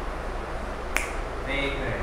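A single sharp snap-like click about a second in, over a steady low room hum, followed near the end by a brief faint voice.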